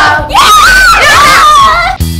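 A group of children screaming together, a loud, high-pitched shriek with wavering pitch that starts about a third of a second in.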